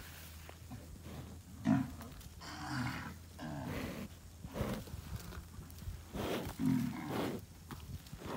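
A humped bull gives a series of low grunting calls while it kneels and digs its horns into the soil. The loudest comes about two seconds in, and others follow through the middle and near the end, with scrapes of scattered dirt between them.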